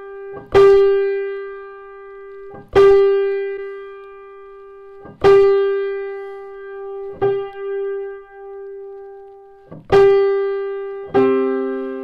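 A single note around the G above middle C on a Bechstein grand piano, struck hard five times about every two and a half seconds, each ringing and dying away while the string is brought into unison by turning its tuning pin; one decay wavers slowly as the strings beat. Near the end a lower note sounds with it.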